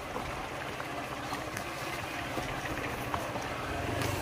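Motorbike engine running steadily at low speed, a low hum under even wind noise on the microphone.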